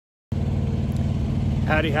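Diesel engine running steadily with an even low hum, cutting in abruptly about a third of a second in after a moment of silence; most likely the semi truck's APU (auxiliary power unit).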